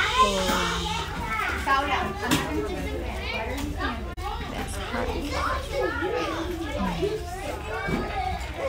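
Many children talking at once, their voices overlapping in chatter and calls. The sound cuts out for an instant about halfway through.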